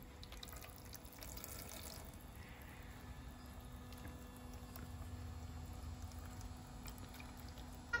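Thin stream of water trickling from a battery-powered toy sink faucet onto a plastic plate, faint, with a few light plastic clicks.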